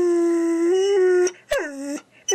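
Dog howling: one long, steady howl that stops a little past the first second, then a short howl falling in pitch near the end.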